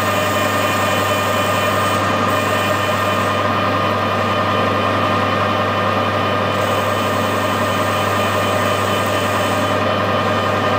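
Metal lathe running under power while a carbide insert tool turns a threaded steel part, the drive giving a steady hum with a constant whine over it.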